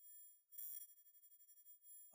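Near silence, with a faint, brief high-pitched electronic tone a little over half a second in.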